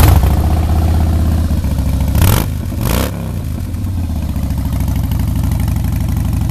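2014 Harley-Davidson Breakout's Twin Cam 103 V-twin running through aftermarket exhaust pipes, loudest right at the start just after start-up. It is revved twice, about two and three seconds in, then settles to a steady idle.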